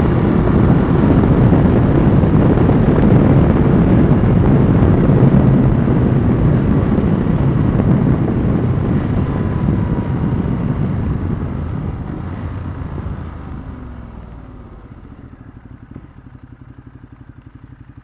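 Ducati Multistrada 1200 V-twin being ridden at highway speed in the rain, heard from inside the helmet: loud wind and wet-road noise over the engine. About twelve seconds in, the noise fades and the engine note falls as the bike slows, leaving a much quieter, evenly pulsing engine near the end.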